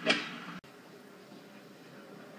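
A brief sharp sound at the start, then an abrupt cut in the audio about half a second in, followed by faint steady background noise.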